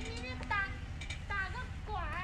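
Faint voices of people talking at a distance, in short snatches, over a steady low rumble.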